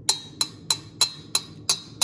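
A metal spoon tapped against the rim of a small copper cezve seven times, about three taps a second in an even rhythm, each tap with a short metallic ring, knocking the last cornstarch off the spoon.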